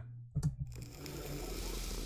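A short click about half a second in, then a hiss-like noise that slowly swells as the music video's soundtrack starts to play.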